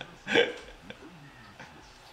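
A man laughing in short bursts, the last and loudest about half a second in, after which the laughter dies down.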